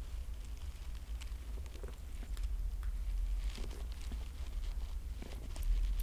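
A steady low hum with a few faint soft clicks and small mouth sounds as beer is sipped from a glass.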